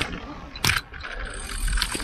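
Road bicycle rolling over cobblestones, its frame and parts rattling with three sharp knocks over a rough rumble that swells in the second half.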